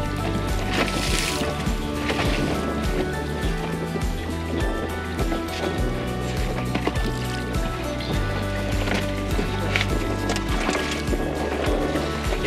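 Background music with a steady beat and a bass line that changes note every second or two.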